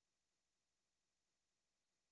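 Near silence: no audible sound.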